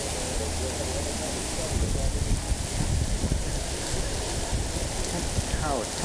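Heavy rain pouring down in a steady hiss. From about two seconds in, wind gusts buffet the microphone with a low rumble.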